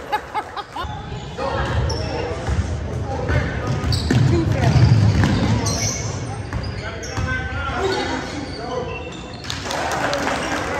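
A basketball being dribbled on a hardwood gym floor, repeated thuds under voices of players and spectators calling out across the gym.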